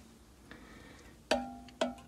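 Two sharp knocks about half a second apart, each with a short ringing tone. They are a figure or hand bumping the glass shelves of a display cabinet as a collectible figure is set in place.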